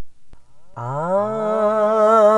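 A man's voice begins a long sung "aah" of a Pashto devotional chant (manqabat) just under a second in, sliding up in pitch and then holding the note with a slight waver. A brief click comes right at the start, before the note.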